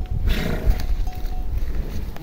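Water buffalo grazing close by, with a short breathy burst about half a second in over a steady low rumble.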